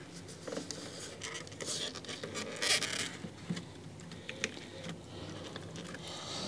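Handling noise as a foam aquarium background is worked into place inside a glass tank: light clicks and rustles of hands and foam against the glass, with two brief scrapes, the longer one about three seconds in.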